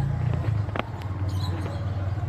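A plastic automotive brake-light switch being fitted into its bracket at the brake pedal, giving one sharp click a little before the middle, then a few faint ticks. A steady low hum sits under it.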